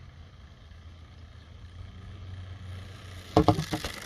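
Child's bicycle rolling up, a low rumble growing louder, then a quick run of loud sharp knocks and clatters near the end as it goes over a small ramp and lands.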